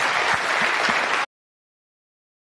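Audience applauding in a lecture hall, a dense steady clapping that cuts off suddenly a little over a second in.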